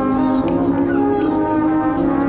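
Brass band of cornets, horns, trombones and tubas playing slow, sustained chords that shift to new notes every second or so.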